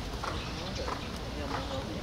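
Horse's hooves striking sand arena footing in a regular trotting beat, with faint voices talking in the background.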